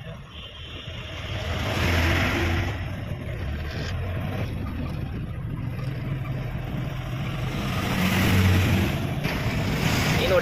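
Truck engine and road noise heard from inside the cab while driving, a steady low rumble that swells about two seconds in and again near the end as the engine pulls harder.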